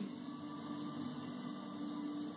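Room tone: a steady low hum with a faint hiss beneath it.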